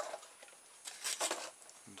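Brief handling noise of plastic and cardboard parts being moved about on a workbench: a short click, then a rustling scrape lasting about half a second.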